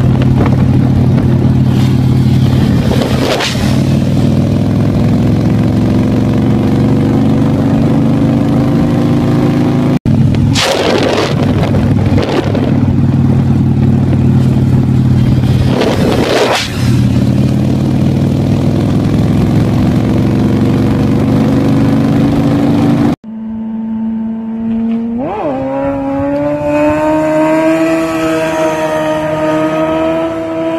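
Yamaha R1 sport bike's inline-four engine held at high revs through a long wheelie, its note climbing slowly, with a few brief rushes of wind noise. After a cut about three-quarters of the way in, an engine speeds up with a rising note.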